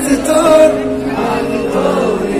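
Amplified live male singing with piano accompaniment, with many audience voices singing along.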